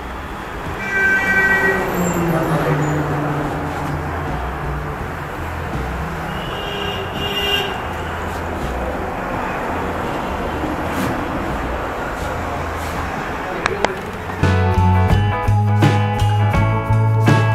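A steady rumble of engine and traffic noise. Near the end, rock music cuts in loudly.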